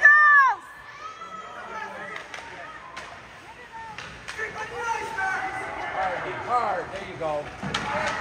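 Ice hockey rink sound: a loud shout opens, then scattered calls from players and spectators, with a few sharp clacks of sticks and puck on the ice and boards.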